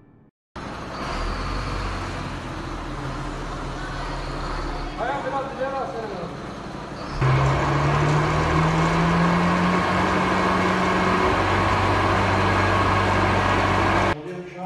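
Sewer vacuum tanker truck running at the kerb, pumping floodwater out of a flooded basement through its suction hose. About seven seconds in its engine and pump speed up and get louder, with a low hum that rises slowly and then holds steady.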